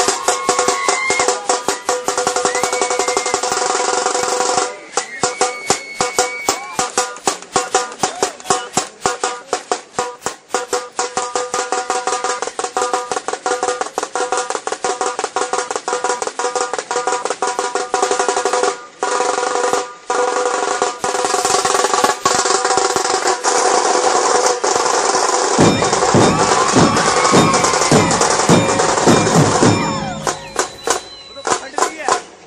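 Procession band of snare-type side drums played in fast strokes and rolls, over steady held melodic tones, with short breaks about five seconds in and near twenty seconds. A bass drum joins for the last few seconds with low beats about two or three a second.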